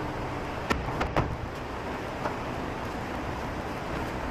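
Steady background room noise with a few light taps or clicks about a second in.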